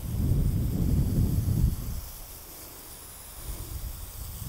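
Garden hose spray nozzle hissing steadily as it waters a planting bed. Wind rumbles on the microphone for about the first two seconds and then eases off.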